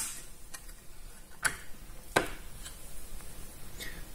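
A handful of short, sharp plastic clicks at irregular intervals, the two loudest in the middle, from the battery module's DC breaker and its clear hinged cover being handled after the breaker is switched on.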